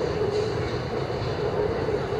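Steady outdoor urban background rumble with a constant low hum, loud and unbroken.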